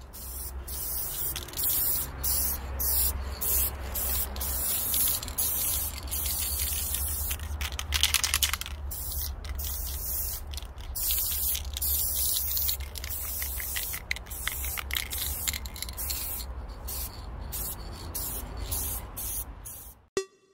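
Aerosol spray paint can hissing in many short passes, stopping and starting every second or so. A steady low rumble runs underneath.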